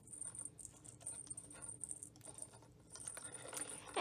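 Faint, scattered light clicks and rustles of hands working baker's twine and a small jingle bell onto a paper gift box.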